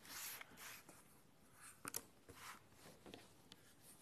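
Faint rustling and scraping of fabric and an acrylic quilting ruler being slid into place on a cutting mat, with a few light clicks.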